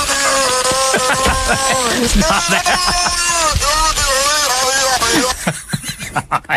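Recording of a beluga whale mimicking human speech: a run of pitched, voice-like warbling calls over a steady hiss, which stop about five seconds in.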